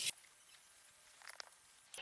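Faint hiss of an aerosol can of canola oil spray coating the inside of a smoker's firebox, with a few small clicks about one and a half seconds in.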